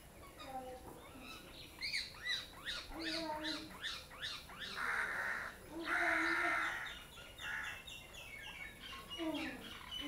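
Crows cawing, with two long harsh caws near the middle, among busy chirping of smaller birds.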